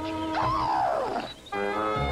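Cartoon soundtrack music with a long pitched cry laid over it. The cry swoops up and then slides steadily down in pitch for most of a second. The music breaks off briefly and starts again on a new chord.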